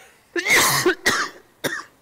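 A man coughing three times into his hand, the first cough the longest and loudest.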